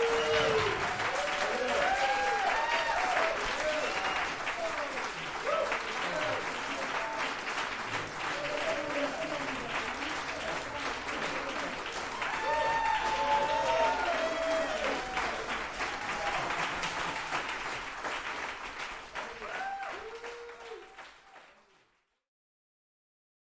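Audience applauding and cheering, with shouted calls and whoops over the clapping; it fades out near the end.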